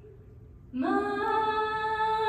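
A cappella female solo voice: after a short hush, she comes in about three-quarters of a second in, scooping up into a long held note.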